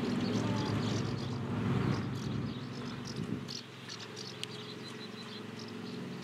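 Outdoor ambience: a low rumble, typical of wind on the microphone, that dies away a little past halfway, under faint high chirping that repeats throughout, with one sharp click near the end.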